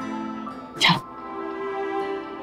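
Soft background music of sustained, held notes, with a single short spoken word about a second in.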